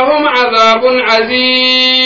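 A man's voice chanting in a drawn-out, sung intonation through a microphone and loudspeakers, settling into one long held note over the second half.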